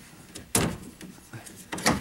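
Two sharp plastic clicks, one about half a second in and one near the end, as the pedal boat's plastic steering yoke (delta) and its retaining clip are worked free of the rudder cross rod by hand.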